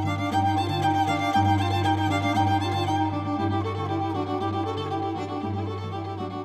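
Bowed string instruments playing a melody over a steady low sustained note. The instruments are reconstructed old Polish fiddles of the suka type, played upright in the lap or against the body, and the tune is a Rajasthani melody.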